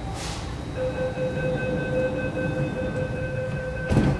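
Train door-closing warning on an MTR R-Train: a short hiss, then a steady warning tone held for about three seconds, ending as the doors shut with a thud near the end.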